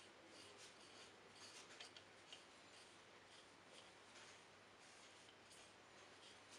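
Very faint rubbing of a stain-soaked pad being wiped over a wooden revolver grip panel, with a couple of slightly louder soft scrapes about two seconds in.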